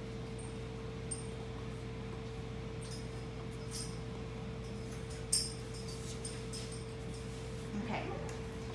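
A steady hum with a few faint clicks and rustles, and one sharper click about five seconds in.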